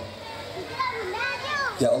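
Children's high voices calling and talking in a large seated audience.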